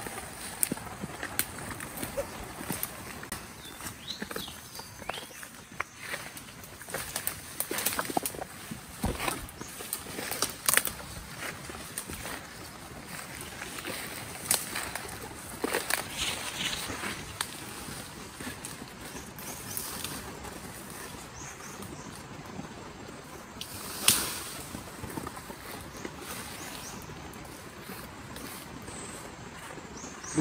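Footsteps and rustling through dense undergrowth: leaves brushing and twigs cracking irregularly, with one louder sharp knock or crack about three quarters of the way through.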